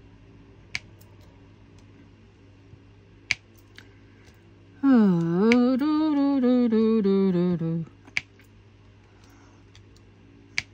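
A woman's voice making one drawn-out wordless sound of about three seconds in the middle, wavering and sliding down in pitch, the loudest thing here. Around it, a few single sharp clicks as a diamond painting pen presses drills onto the canvas.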